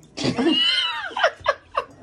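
A high-pitched vocal squeal that rises and falls in pitch for just under a second, followed by three short bursts of laughter.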